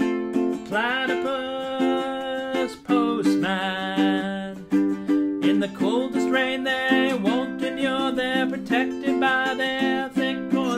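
A man singing with held, gliding notes to his own strummed ukulele chords.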